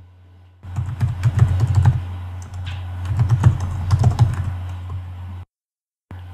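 Typing on a computer keyboard: a quick run of key clicks lasting about five seconds, over a low steady hum, cutting off suddenly near the end.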